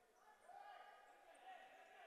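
Faint court sounds of an indoor futsal game, with a distant, drawn-out call lasting about a second and a half, starting about half a second in.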